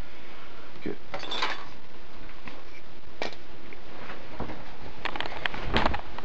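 Scattered light clinks and knocks of small hard objects being handled, over a steady hiss, with a cluster of them near the end.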